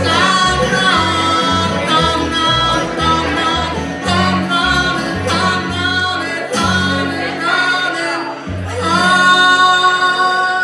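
Live bluegrass string band playing with singing: banjo, mandolin, guitar and plucked upright bass, with fiddle at first. The upright bass steps through notes, and the tune closes on a long held note near the end, the loudest part.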